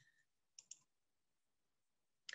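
Near silence, broken by two faint, very short clicks in quick succession a little past halfway through.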